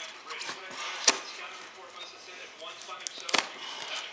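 Cardboard mailer being cut open with a knife and handled: paper and cardboard rustling, with a sharp snap about a second in and a quick cluster of snaps near the end.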